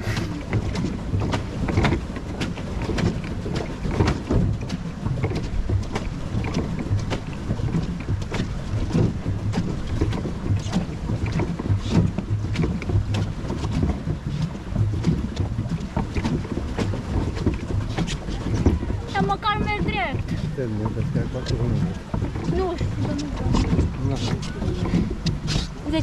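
Swan pedal boat under way: a continuous low churning rumble from the paddle wheel and water, with irregular wind buffeting on the microphone. A short warbling call sounds about three-quarters of the way in.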